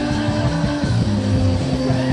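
Live rock band playing: a long held note that steps down in pitch about a second in, over a shifting bass line.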